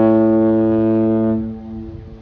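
The Algoma Transport's ship horn sounding a long, deep, steady blast that stops about one and a half seconds in and fades away.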